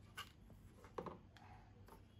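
Near silence: faint room tone with three soft clicks or taps about a second apart.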